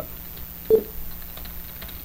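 A few faint computer keyboard keystrokes as text is typed, with a brief low vocal murmur a little before the middle, over a steady low background hum.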